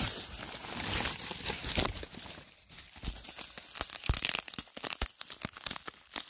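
Plastic bubble wrap crinkling and crackling as it is handled and unwrapped by hand, with a quick run of sharp crackles in the second half.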